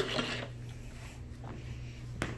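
Low, steady room hum with a short rustle at the start.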